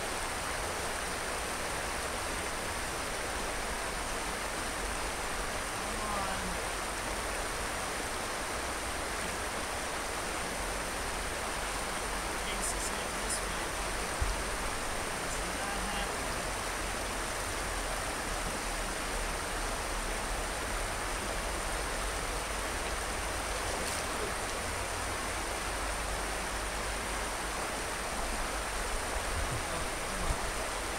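Flowing stream water, a steady even rush.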